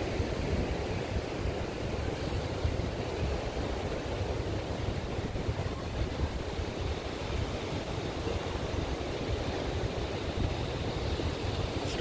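Steady outdoor noise of ocean surf washing, with wind rumbling and buffeting on the microphone.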